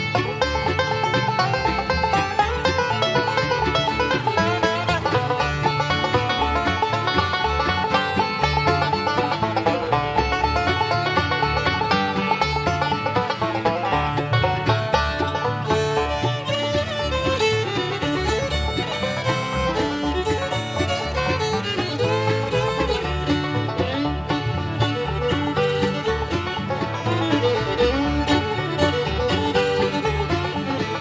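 Bluegrass band playing an instrumental passage with no singing: banjo and fiddle to the fore over rhythm guitar and bass, at a steady beat.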